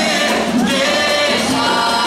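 A group of voices singing an Umbanda ponto (sacred chant) for Iemanjá, with musical accompaniment, steady and loud.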